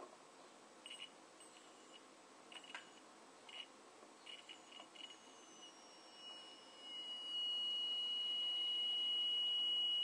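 Piezo buzzer on a homemade lemon-juice battery giving short, broken beeps as the lead is touched to the cell's screw. About seven seconds in it settles into one steady high tone.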